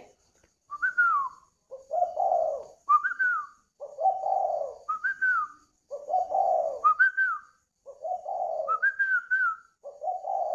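Spotted dove (chim cu gáy) cooing its song over and over, about once every two seconds: each phrase is a higher note that glides down, followed by a lower, fuller coo.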